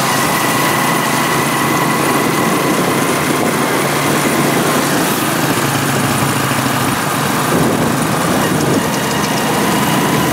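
Small motorcycle engine of a Philippine tricycle running steadily while cruising, heard from inside the sidecar, with wind and road noise mixed in.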